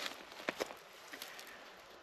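Quiet outdoor background with a few faint clicks, about half a second in and again around a second in.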